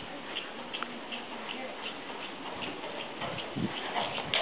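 PRE stallion trotting on arena footing: faint, even ticking about two to three times a second, in time with the two-beat trot.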